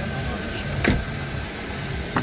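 Steady low background hum, with faint voices, from an outdoor car lot. One short sharp click comes just under a second in.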